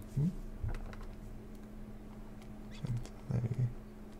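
Faint clicks and scratches of a stylus on a pen tablet as a word is handwritten, with a few short low murmurs from the voice and a steady low hum underneath.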